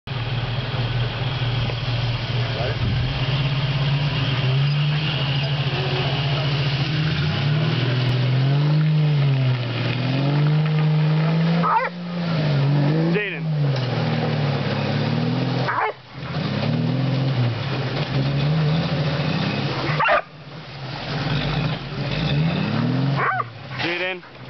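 Jeep Wrangler YJ engine revving up and down over and over as the stuck Jeep tries to drive out of deep mud, with brief sharp let-offs of the throttle about three times.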